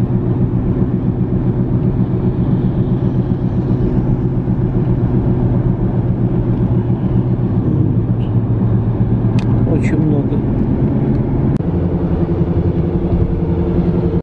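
Steady drone of a car's engine and road noise, heard from inside the moving car, with a few faint clicks nearly ten seconds in.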